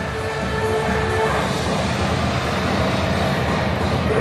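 A loud, steady rumble with faint background music, the show's loudspeaker music mixed with splashing in a large echoing pool hall.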